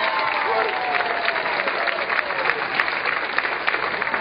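Audience applauding a winner's announcement, a dense steady clatter of many hands clapping. An excited voice cries out over it, drawn out and falling in pitch over the first two seconds or so.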